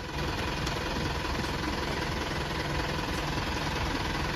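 Van engine idling steadily, a low, even rumble.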